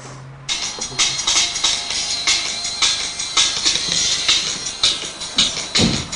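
Drum and bass tune played at extreme volume through headphones, starting suddenly about half a second in: rapid breakbeat drums, thin and tinny with little bass, and a deep bass hit near the end.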